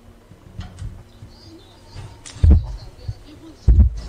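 Two dull, low thumps, the first about two and a half seconds in and the second near the end, over faint background noise.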